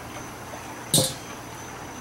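A single short, sharp knock about a second in, from something handled at the open charcoal smoker. Under it runs a faint, steady, high insect chirring.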